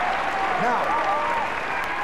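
Studio audience applauding steadily, with a voice heard over the clapping.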